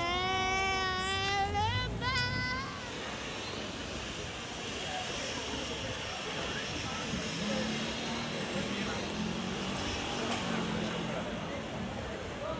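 A high voice sings one long, wavering note for about three seconds, with two short breaks near its end. Then steady background noise with faint, indistinct voices.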